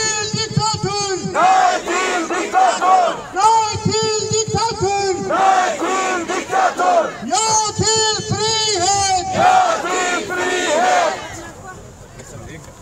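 A crowd of demonstrators chanting slogans, with a man on a megaphone leading and the crowd answering in alternating phrases about every two seconds, three rounds in all. The chanting stops shortly before the end.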